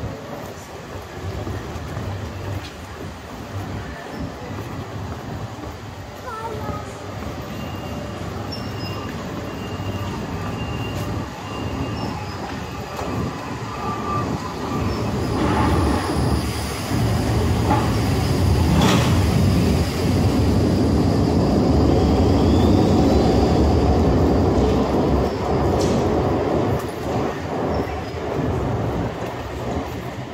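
City tram running along street rails close by, its rumble building past the middle and easing off near the end, over steady street noise.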